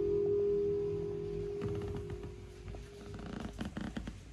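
The last held note of a sung song played back over a hi-fi system fades out over about two and a half seconds. Faint, irregular clicks and crackle of the playback follow.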